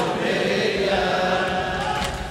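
A crowd of male mourners chanting a Shia latmiya refrain in unison, holding a long drawn-out note.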